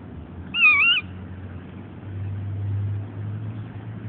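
A dog, a Pitbull and Rhodesian Ridgeback mix, gives one short high-pitched whine about half a second in, its pitch wavering. A faint low hum swells and fades in the middle.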